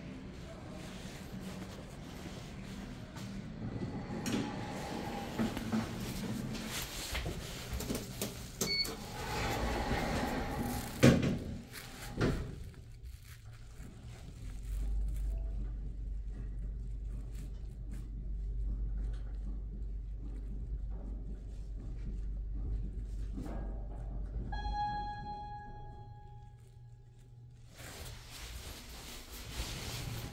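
1997 LG Industrial Systems LGP geared traction elevator: a couple of sharp knocks as the doors shut, then a steady low hum for about ten seconds as the car travels, and a short electronic arrival chime near the end of the run.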